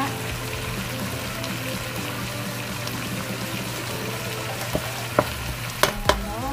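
Curry-marinated chicken pieces sizzling steadily in a stainless steel pot, frying in the fat rendered out of the chicken itself with no oil added. A few sharp clicks of a metal spoon against the pot come near the end.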